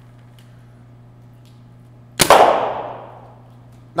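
A single paintball marker shot about two seconds in: one sharp pop that rings on in the reverberant indoor arena for about a second.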